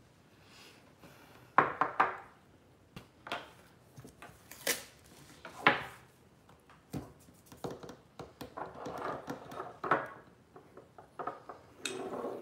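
Ceramic pieces being picked up and set down on a table: a string of sharp knocks and clinks, the loudest about one and a half seconds in and again near the middle.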